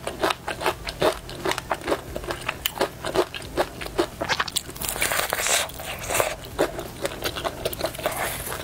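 Close-miked chewing of crispy fried chicken: a quick, irregular run of sharp crunches several times a second. A short rustling stretch comes about five seconds in.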